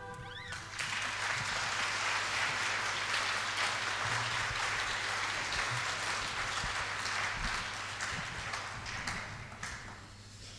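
Audience applauding at the end of a song, starting about a second in and dying away near the end.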